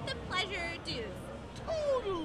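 A woman's voice speaking, ending in one long vocal sound that falls steadily in pitch.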